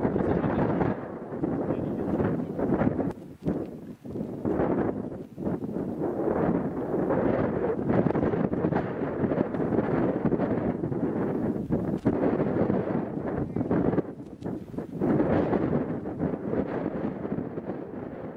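Mount Etna erupting: a loud, uneven rushing noise that surges and eases every second or two, with a few short lulls.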